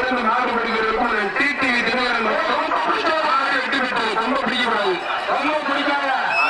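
A man's voice talking without a break.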